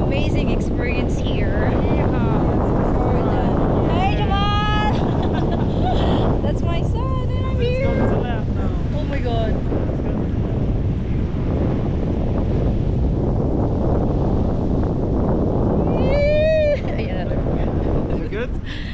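Steady, loud wind rush buffeting the camera's microphone during a tandem paraglider flight. A few brief wordless voice sounds cut through it about four seconds in, around eight seconds, and again near the end.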